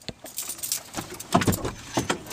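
A large plastic RC Hummer truck being handled and loaded into a car, giving a run of irregular rattling clicks and knocks.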